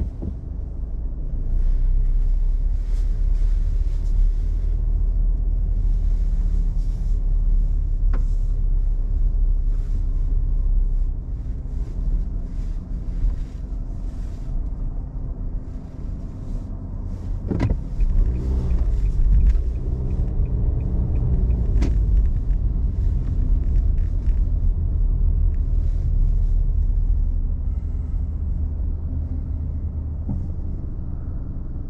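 Car driving, heard from inside the cabin: a steady low rumble of engine and road noise, easing off for a while in the middle and building again, with a few single sharp clicks or knocks.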